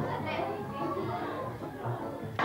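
Indistinct overlapping voices chattering, with music underneath.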